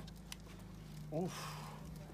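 Pistol being handled, with one faint click near the start over a steady low background hum.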